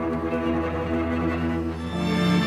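Orchestra with bowed strings to the fore playing sustained held chords; right at the end a louder passage comes in.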